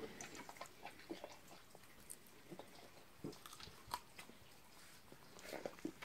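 A Cane Corso dog chewing a strawberry: faint, irregular small clicks and smacks of its mouth.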